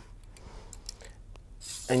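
A few faint clicks and light scraping from a metal cleaning rod and bore brush being worked in an AR-15 barrel.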